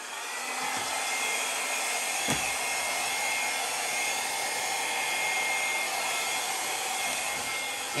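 Hand-held hair dryer running steadily with a thin high whine, blowing wet acrylic paint across a canvas in a Dutch pour. It comes up to speed in the first moment and cuts off at the end.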